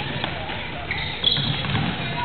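Basketball game in a gym: players' sneakers squeaking briefly on the hardwood with a sharp knock of the ball or a body about a second in, over the chatter and shouts of players and spectators echoing in the hall.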